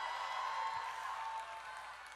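An audience in a hall giving faint applause and cheers, dying away after a line of the sermon.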